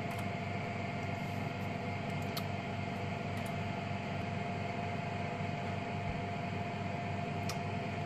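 Steady mechanical room hum with a constant mid-pitched whine held throughout, and a few faint clicks.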